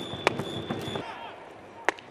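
Baseball game sound: a pitched ball popping into the catcher's mitt twice, once about a quarter second in and more sharply near the end, over low stadium crowd noise with a faint high steady tone in the first half.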